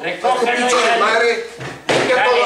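A raised voice shouting without clear words, with a knock near the end.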